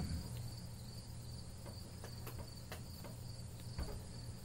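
Quiet background with a faint, steady high-pitched tone over a low hum, broken by a few faint clicks.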